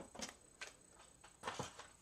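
Faint handling sounds of a paper trimmer being picked up off a tabletop: a few light clicks and knocks, with a small cluster about one and a half seconds in.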